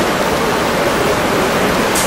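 A loud, steady hiss of even noise across all pitches, with no voice in it.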